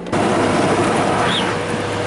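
Steady road and wind noise inside a moving car with a window cracked open, over a low steady drone.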